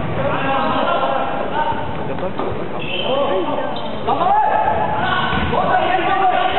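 Players' voices calling out across a reverberant indoor basketball court, louder from about four seconds in, with a basketball bouncing on the hard gym floor.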